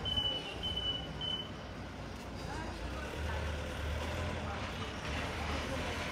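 Truck reversing alarm beeping at a steady pace, about two high beeps a second, stopping about a second and a half in. A low engine rumble runs on under the street noise.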